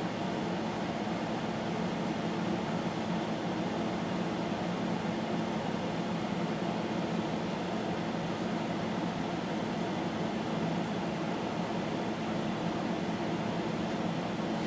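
Steady low machine hum with an even hiss.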